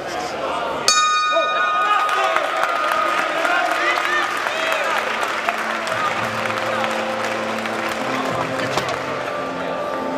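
Boxing ring bell struck once about a second in, a bright ring that fades over a few seconds, marking the end of the round. Arena crowd chatter runs underneath, and music comes in about halfway.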